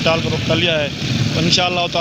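A man talking into a handheld microphone, over a steady low background rumble of street traffic.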